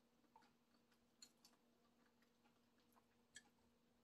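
Near silence: a faint steady low hum with three soft clicks, the last near the end.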